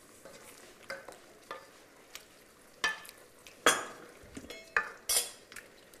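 A wooden spoon stirring chunks of meat in a coated pot, with irregular scrapes and knocks against the pot, the loudest just past halfway. Under the stirring is a light sizzle of the meat searing in the pot.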